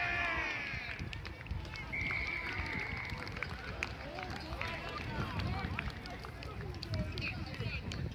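Shouting voices at a rugby match, then one steady referee's whistle blast lasting about a second, about two seconds in, marking a try being scored.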